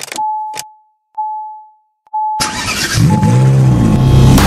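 Intro sound effects: two clicks and a thin steady high beep that fades out and comes back twice, then about two and a half seconds in a sudden loud burst of music with an engine revving effect.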